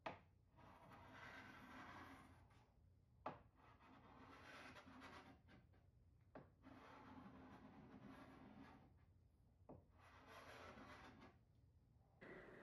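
Hand paint scraper dragged along a painted wood dresser top, lifting latex paint off the wood in curls. Four faint scraping strokes about three seconds apart, each starting with a sharp click as the blade meets the surface.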